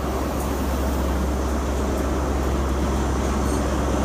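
Class 43 HST power car rolling slowly past at close range as the train comes to a stop: its diesel engine gives a steady low drone under a constant rush of train noise.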